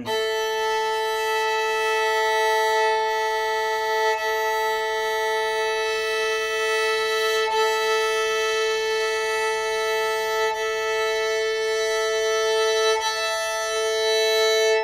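Violin A and E strings bowed together as a sustained perfect fifth, with a bow change every few seconds. The E string is eased slightly out of tune and back by its fine tuner, so the fast beating between the two notes slows down and settles into a calm, in-tune fifth.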